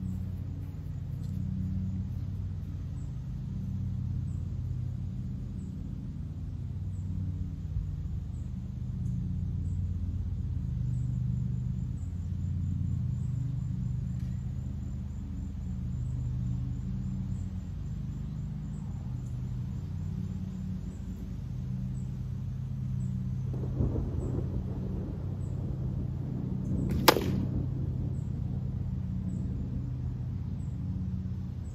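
A 455-grain broadhead arrow striking 3/4-inch plywood in front of a block target: one sharp crack near the end, over a steady low rumble.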